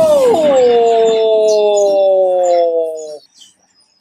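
A woman's long, loud wordless wail, a howled "ooh": a high held note that slides down, falls slowly and cuts off sharply about three seconds in.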